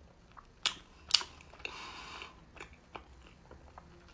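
Close-miked mouth sounds of biting into and chewing a small soft pastry: two sharp clicks about half a second apart near the start, then a short stretch of chewing noise around the middle, and faint mouth clicks after it.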